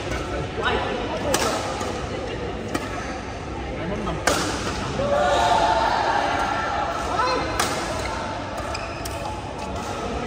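Badminton rackets striking a shuttlecock during a doubles rally: a few sharp hits, one every second or few, over players' voices.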